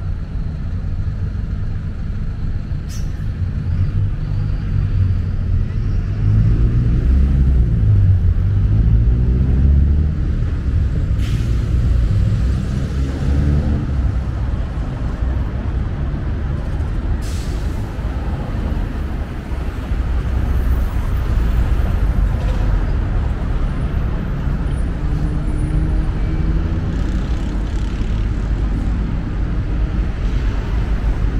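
Road traffic: car and bus engines running and passing, with one heavy engine rising and then falling in pitch between about six and ten seconds in. A few short, sharp hisses cut through, about three, eleven and seventeen seconds in.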